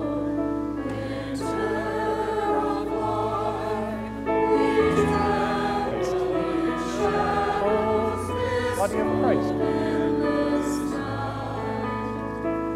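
Church choir singing a hymn over sustained accompaniment chords with a steady bass, growing louder about four seconds in.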